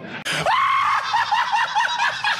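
A man's shrill, screaming laugh. A long, high-pitched shriek begins about half a second in and then breaks into quick, wavering cackles.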